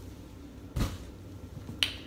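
Two short, sharp handling clicks: a duller knock about a second in, then a crisper snap near the end.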